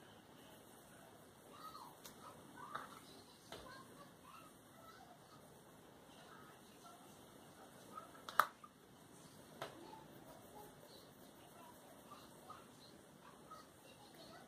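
Faint, quiet desk sounds from colouring with wooden coloured pencils. A few sharp clicks come as pencils are put down and picked up on the table, the loudest about eight seconds in, with faint high chirps in the background.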